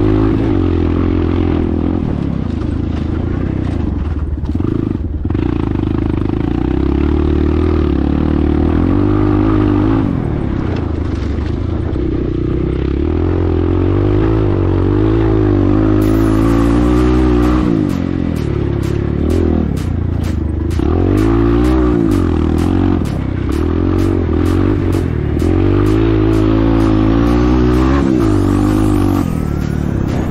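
Dirt bike engine pulling under throttle, its pitch climbing and dropping again and again as the rider accelerates and backs off along a dirt track. Through the second half, a rapid run of short clicks and knocks sits over the engine.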